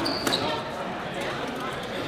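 Spectators murmuring in an echoing gym hall. A light knock and a short high squeak come about a quarter second in.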